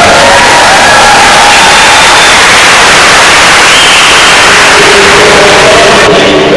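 A loud, steady wash of hiss-like noise with faint voices showing through it, cutting in just before and ending just after.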